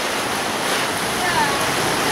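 Steady rushing and sloshing of floodwater across a street, churned into waves by an SUV driving through it.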